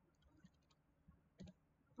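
Near silence with a few faint clicks of computer keyboard keys, one a little more distinct about one and a half seconds in.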